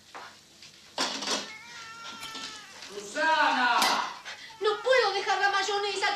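A baby crying in high-pitched, wavering wails that start about three seconds in and grow louder towards the end, after a brief noise about a second in.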